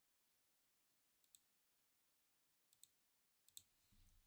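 Near silence broken by three faint pairs of quick clicks, about a second, nearly three seconds and three and a half seconds in, from a computer mouse being clicked.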